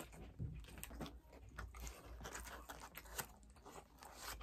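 Close-miked chewing of a mouthful of loaded fries: faint, irregular wet clicks and soft crunches of the mouth.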